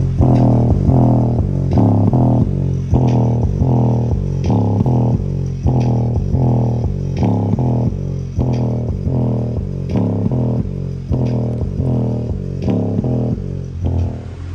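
Music with a heavy bass line and a steady pulsing beat, played loud through a Westra 4.5-inch woofer in a box; the sound sits mostly in the low notes, with little above.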